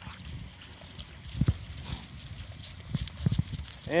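A few soft, low thumps over a faint outdoor background, the first about a second and a half in and two more close together near the end.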